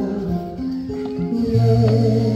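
Live acoustic music: a guitar with a voice, held notes changing in pitch, and a low note coming in about one and a half seconds in.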